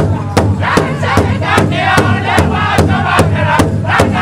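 Powwow drum group: several men singing loudly in high-pitched unison while beating a large shared hide drum in a steady beat, about two and a half strokes a second.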